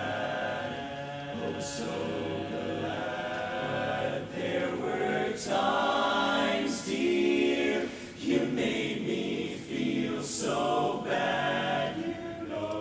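Men's barbershop chorus singing a cappella in close harmony, chords swelling and shifting, with a few sharp hissed consonants and a brief dip in loudness about two-thirds of the way through.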